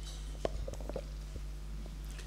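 Steady low mains hum from a microphone and sound system, with a short cluster of small clicks and knocks about half a second in.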